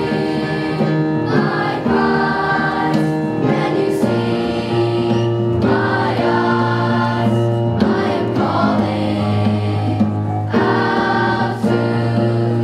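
Youth concert choir singing in harmony, holding chords that change every second or two, with short breaths between phrases.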